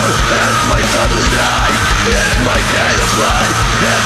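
Industrial metal song playing loud: dense, distorted full-band music over a heavy, steady drum beat.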